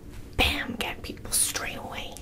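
A woman whispering, with no clear words.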